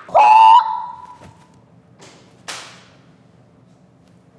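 A child's short, high yell, like a karate cry, lasting about half a second, followed a couple of seconds later by two quick whooshing swishes.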